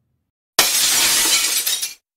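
A loud, hissy crash sound effect over an animated end title card. It starts suddenly about half a second in and cuts off sharply just under a second and a half later.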